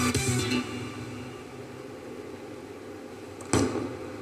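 A musical sting ends about half a second in, leaving a quiet bowling-alley background played through a television's speaker. Near the end comes one short noise as the bowler delivers and the bowling ball is released onto the lane.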